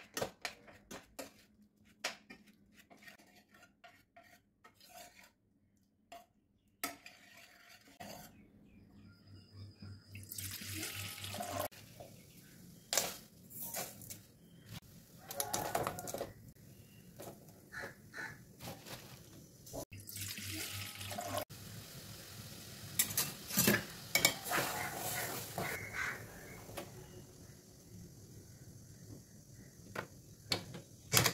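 A steel ladle repeatedly knocks and scrapes against an aluminium pressure cooker as cooked chana dal is mashed, in quick clicks over the first several seconds. After a brief pause come scattered clatters of pots and utensils and splashing liquid as jaggery goes into an aluminium kadai on the stove.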